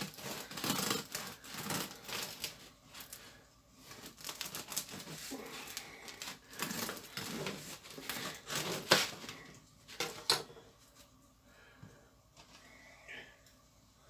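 Bread knife sawing through the hard crust of a freshly baked loaf: quick crackling, crunching strokes that stop about ten seconds in as the cut goes through.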